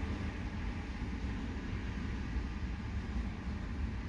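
Steady low rumble of background noise heard inside a car's cabin, with no distinct events.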